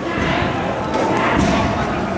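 Dull thuds from taekwondo sparring on foam mats, over a background of voices.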